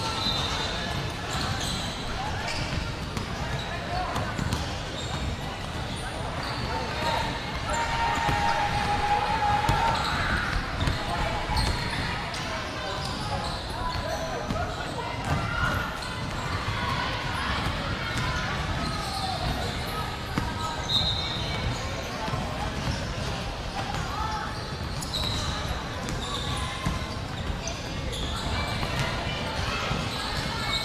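Several basketballs bouncing irregularly on a wooden court during warm-ups, echoing in a large hall, under a steady background of crowd chatter.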